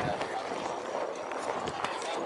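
Footsteps on packed snow, with faint, uneven crunching ticks over a steady outdoor hiss and faint background voices.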